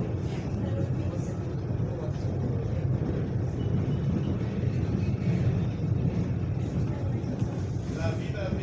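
Steady low rumble of an electric commuter train running along the track, heard from inside the carriage.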